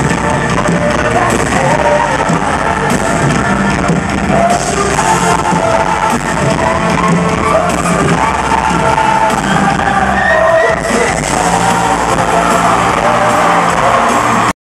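Live pop band playing with a lead vocal, loud and continuous, heard from the audience with the echo of a large arena.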